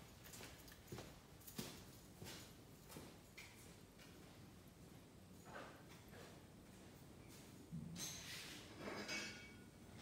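Faint, scattered clinks and knocks of metal hand tools being handled around the engine bay, a few in the first seconds, with a cough near the end.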